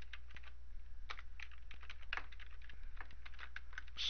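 Computer keyboard typing: a run of quick, uneven keystrokes, with a steady low hum underneath.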